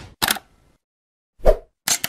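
Three short pop sound effects from an animated logo intro: one just after the start, one about a second and a half in, and one near the end. The middle pop is the deepest and loudest.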